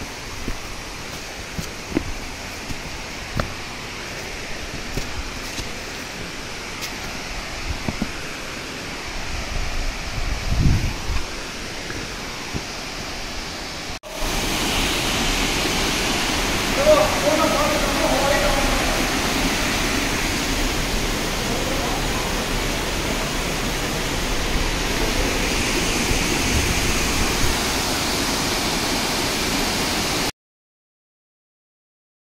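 Steady rush of running water that jumps louder about halfway through to the full sound of a waterfall pouring into a rocky gorge. A single low thump about a third of the way in.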